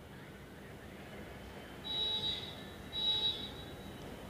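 Two faint, short, high-pitched electronic tones about a second apart, over a low background hiss.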